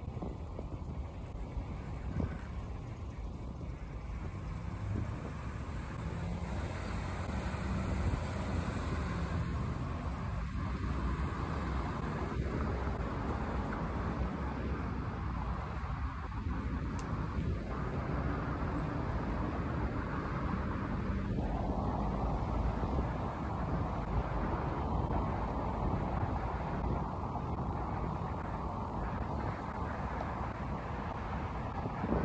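Steady outdoor rumble of road traffic mixed with wind noise on a moving phone's microphone, growing a little louder about a third of the way in.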